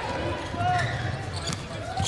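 Basketball game in an arena: a steady crowd murmur with a ball being dribbled up the hardwood court, faint short ticks through it.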